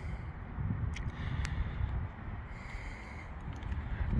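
Low, uneven rumbling background noise, with two faint clicks about a second and a second and a half in.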